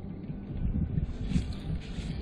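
Wind buffeting the microphone: an irregular low rumble with no clear tone.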